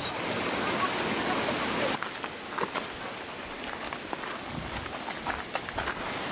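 Outdoor background on a wooded trail. A steady hiss cuts off suddenly about two seconds in, leaving quieter ambience with scattered faint clicks.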